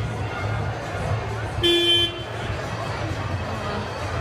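Busy street crowd with music playing a steady low beat, cut through by one short, loud horn blast about one and a half seconds in, lasting under half a second.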